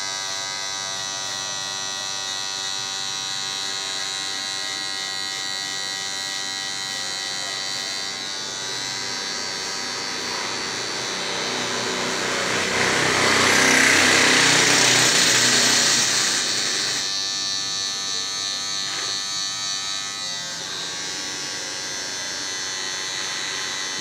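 Electric hair clipper buzzing steadily while cutting a customer's hair. For several seconds midway it gets louder and hissier, then settles back to the steady buzz.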